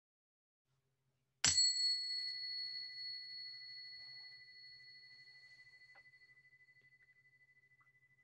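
A small meditation bell struck once about a second and a half in, its high, clear ring fading slowly with a slight wavering, closing a period of silent reflective meditation.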